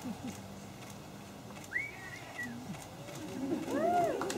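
Wedding guests whooping and beginning to cheer at the couple's kiss: one high whoop about two seconds in, then several voices rising together near the end.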